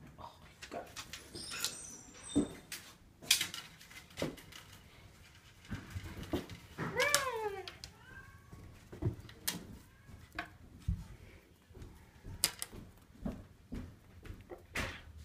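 A cat meows about seven seconds in, one falling call followed by a weaker, shorter one, amid scattered light taps and knocks from the cat playing with a toy mouse on a wooden floor.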